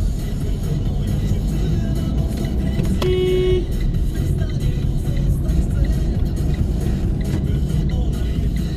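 Steady engine and road rumble heard from inside a moving car, with music playing from the car radio. About three seconds in, a car horn gives a single short toot.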